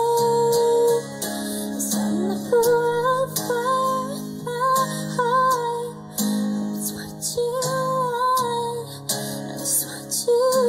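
A female voice singing a slow melody over a strummed acoustic guitar: one long held note to begin, then a run of shorter sung phrases.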